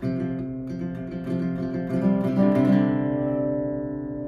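Acoustic guitar picked and lightly strummed, going back and forth between a Csus chord and the same shape with the D string open. It finishes on a chord left ringing and slowly fading.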